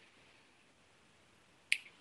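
Near silence, broken near the end by one short, sharp click.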